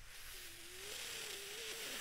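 A person drawing a long breath close to a microphone: a soft hiss that grows slowly louder, with a faint wavering whistle through most of it.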